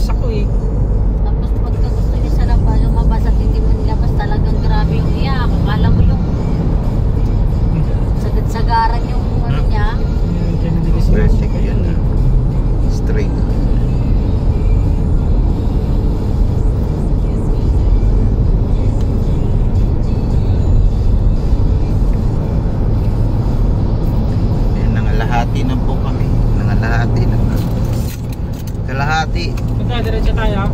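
Steady road and engine noise inside a moving car's cabin, a continuous low rumble, with short snatches of voice heard now and then over it.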